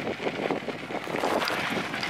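Wind buffeting a handlebar-mounted camera's microphone while a fat bike rolls over a rocky dirt trail. The tyres crunch over gravel and the bike rattles in many small irregular clicks.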